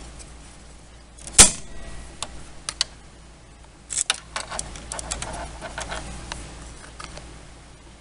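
Scattered plastic clicks and rattles of hands working at the print carriage of a Canon Pixma MX922 inkjet printer: one sharp click about one and a half seconds in, then a run of smaller clicks a little past the middle.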